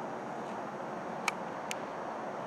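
Steady background noise with no clear source, with two faint, short clicks close together past the middle.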